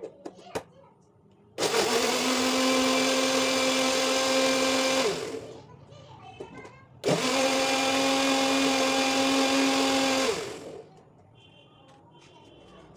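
Electric countertop blender blending mango juice in two runs of about three and a half seconds each, with a short pause between. Each run is a steady motor hum that slides down in pitch as the motor spins down when switched off.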